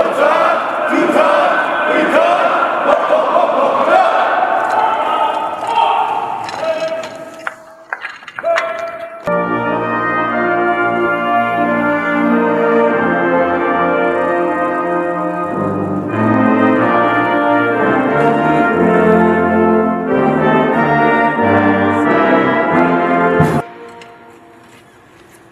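A large group of soldiers singing together, fading out about seven seconds in. From about nine seconds a brass band plays slow, sustained music, which stops abruptly just before the end.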